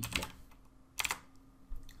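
Computer keyboard keys clicking: a quick run of a few keystrokes at the start, a couple more about a second in, and a faint one near the end.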